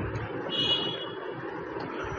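Faint steady background hiss in a pause of the voice-over, with a brief faint high tone about half a second in.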